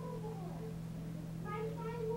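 A young child's high, sliding voice, with a gap in the middle, over a steady low hum.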